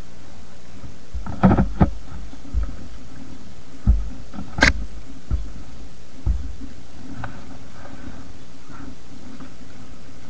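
Suzuki Gixxer motorcycle riding slowly over a rough, broken road: a steady drone of engine and wind with a run of thumps and knocks as the bike goes over bumps, the sharpest a crisp knock about five seconds in.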